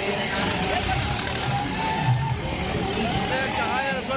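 Loud, steady fairground din: many people's voices and music mixed together, with a low mechanical rumble underneath.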